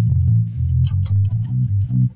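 Yamaha electric bass guitar playing a fast run of plucked notes, the pitch stepping up and down from note to note.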